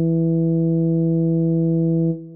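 The final whole note of a euphonium melody from the sheet-music playback, held as a single steady low tone that does not waver, with a plain, electronic-sounding timbre.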